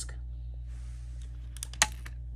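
A few sharp plastic clicks about a second and a half in, the last the loudest, as a CD is pried off the hub of its plastic jewel case.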